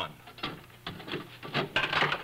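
A steel ball bearing rolling and clattering down the ramps of a ball-bearing binary-adder demonstration board: a rapid, irregular series of clicks and rattles that grows busier toward the end.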